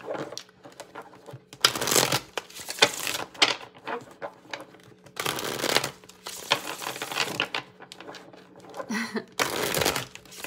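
A tarot deck being shuffled by hand: several short spells of card-on-card riffling, each about half a second to a second long, with pauses between.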